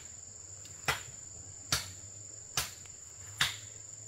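Four evenly spaced chopping strikes, about one a second, of a blade cutting into bamboo stems. Under them runs a steady high-pitched drone of insects.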